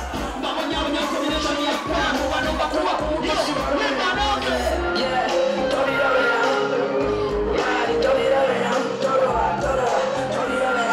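Loud music with singing over it and crowd noise underneath, running steadily throughout.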